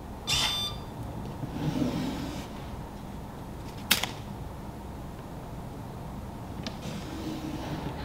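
A short electronic beep from the Arduino safe's keypad as the unlock key is pressed, followed by a brief whir of the small servo motor pulling back the door latch. About four seconds in there is one sharp click as the wooden door is opened, and near the end a lighter click as it is shut.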